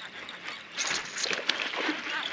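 A hooked largemouth bass being fought and reeled in: irregular bursts of splashing and reel noise start under a second in.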